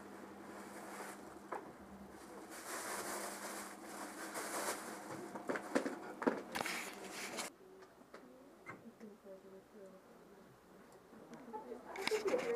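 Rustling and crinkling of a plastic bag and the contents of a fabric holdall being rummaged through, with sharp little clicks among it, from about two and a half to seven and a half seconds in; quieter afterwards.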